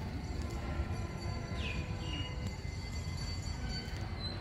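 Outdoor ambience: a steady low rumble with a faint descending chirp about one and a half seconds in.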